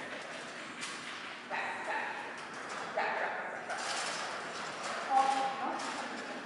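A dog barking a few short times, about three barks spread across the few seconds.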